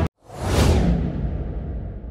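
Whoosh sound effect: after a brief silence it swells in, peaks about half a second in, then fades away slowly over a low rumble.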